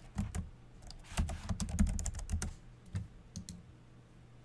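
Typing on a computer keyboard: a quick run of keystrokes for about two and a half seconds, then a few spaced ones.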